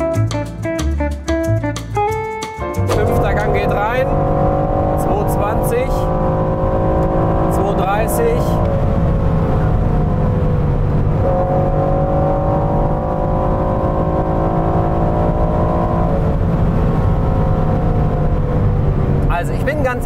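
Background music with a beat for the first few seconds, then the Aston Martin Vantage F1 Edition's twin-turbo V8 running hard at autobahn speed with road noise, heard inside the cabin. The engine's pitch slowly sinks, steps up once about halfway through, and sinks again.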